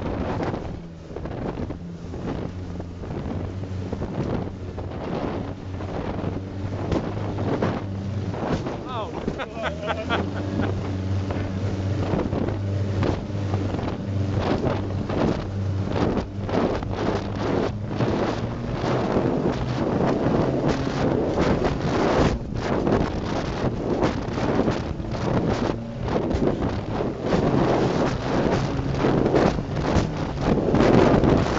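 Albatross speedboat's Coventry Climax engine with twin Weber carburettors running at speed, a steady drone under heavy wind on the microphone and the hull slapping and spraying through chop. The wind and spray grow louder near the end.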